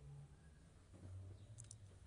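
Near silence with a faint low hum, broken by two quick faint clicks close together about one and a half seconds in.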